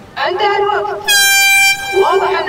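Hand-held canned air horn giving one steady blast of under a second, about a second in, signalling that the building time is up.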